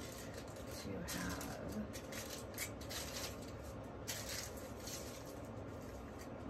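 Soft rustling and handling noises as a small container and paper are worked by hand, in short scratchy bursts several times over a low steady hum.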